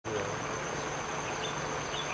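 Insects droning steadily at two high pitches, with a few faint short chirps near the middle and end.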